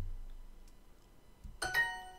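Duolingo's correct-answer chime: a short bright ding of several ringing tones about one and a half seconds in, fading quickly.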